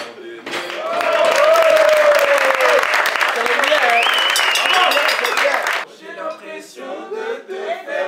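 A room of people clapping and cheering, with a voice singing over it, from about a second in until it stops abruptly near six seconds; after that, voices talk more quietly.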